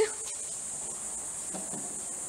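A steady, high-pitched whine with a sharp click right at the start.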